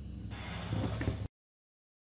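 Steady low room hum with a faint hiss and one small click, cut off abruptly to dead silence a little over a second in.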